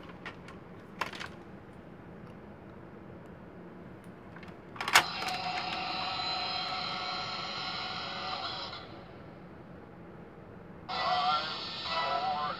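Thunderbirds Tracy Island electronic playset: a few plastic clicks as it is handled, then a sharp click about five seconds in sets off a steady electronic sound effect from its small speaker for about four seconds. Near the end a second electronic sound starts.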